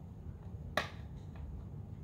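One sharp click about three-quarters of a second in, then a fainter tick, as fingers pry at a clear hinged plastic trading-card case that is still shut.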